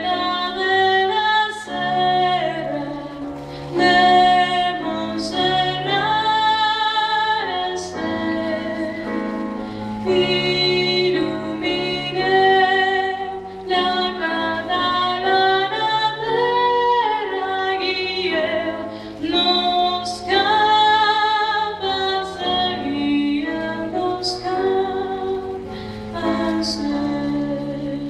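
A woman singing solo with piano accompaniment, in long held notes over steady piano chords.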